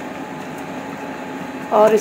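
Cooked saag being mashed with a wooden masher in a steel pressure cooker, soft and without sharp knocks, over a steady mechanical hum. A woman's voice starts near the end.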